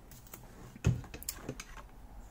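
Light clicks and taps of a metal feeler gauge being worked in and out of a carburettor throat against the throttle butterfly, to feel the gap while the carbs are synchronised. The sharpest click comes about a second in, with a few lighter ones around it.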